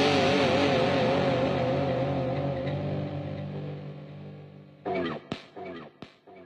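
Outro of an alternative hip-hop song: a held chord with one wavering tone slowly fading out. Near the end a short sound comes in and repeats in quickly fading echoes.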